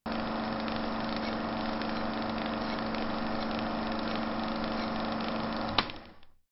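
A steady engine-like hum with a few low droning tones over a hiss. A sharp click comes near the end, then the sound fades out.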